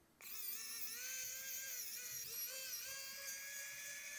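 Small electric precision screwdriver whirring as it backs out the T5 Torx screws holding the heat sink to the logic board. The motor's whine starts just after the beginning and wavers slightly in pitch as the load changes.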